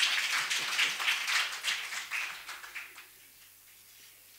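Audience applauding; the clapping dies away about three seconds in.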